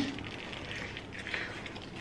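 Faint chewing of a soft burger bun and filling, with a small click about halfway through.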